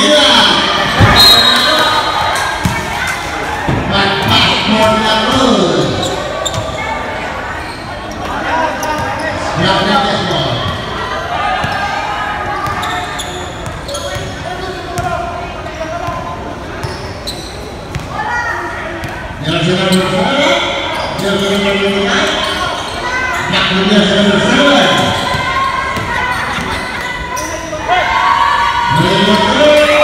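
A basketball bouncing on a wooden gym court as players dribble, with players and spectators shouting and calling out in an echoing hall. The voices pick up in the last third.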